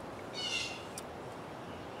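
A bird calling once in the background, a short high call of about half a second, with a couple of faint clicks.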